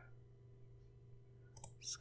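Near silence with a low steady hum, broken about one and a half seconds in by a couple of faint computer-mouse clicks.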